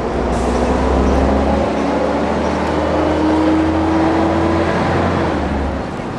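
An engine running close by, loud, over a steady low rumble, its tone climbing slowly until about five seconds in.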